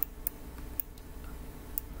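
Four faint, sharp clicks at uneven intervals over a low steady hum.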